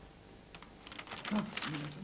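Sheets of paper being handled and leafed through, a rustling that starts about half a second in and grows busier, with a low murmur of a man's voice under it near the end.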